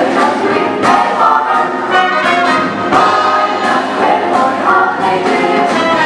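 A vocal jazz ensemble singing in close harmony with a live rhythm section, drum kit and electric bass, keeping a steady swing beat.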